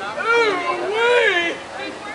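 A person shouting twice near the camera, loud and high-pitched, the second call longer than the first.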